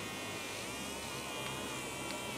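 Small rechargeable wand-style body massager's vibration motor buzzing steadily, its silicone head held against a palm; the pitch wavers slightly.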